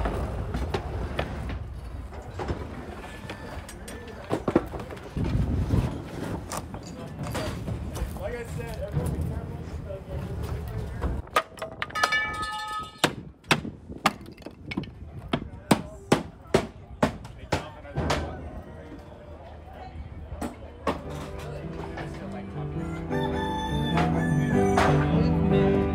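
Knocks and bangs of junk being handled and thrown into a steel dumpster, clustered in the middle, with a rooster crowing once just before them. Near the end an upright piano starts playing.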